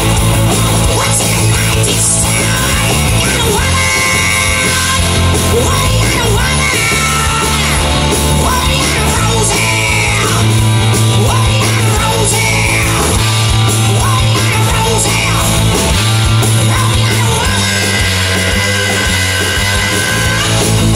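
Live hard-rock band playing loudly, with electric guitar over heavy bass, the guitar bending notes up and down.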